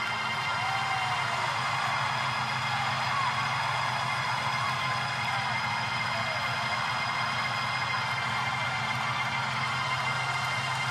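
Worship music in long held chords, with the scattered voices of a standing congregation rising and falling over it.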